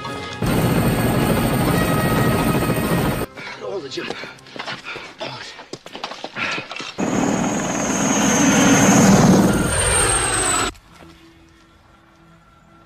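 Film battle soundtrack: a helicopter and loud bursts of noise that cut in and out with the edits, over background music. The noise drops away sharply about eleven seconds in, leaving quieter music.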